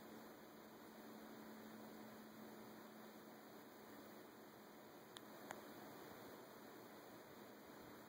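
Near silence: a faint steady hiss and low hum, with two small clicks about five seconds in.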